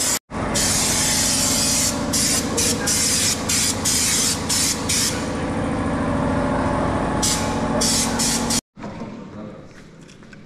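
Air-fed underseal gun spraying underbody sealant into a car's wheel well: a loud compressed-air hiss, broken by many short breaks as the trigger is let go, over a steady low hum. It cuts off suddenly shortly before the end.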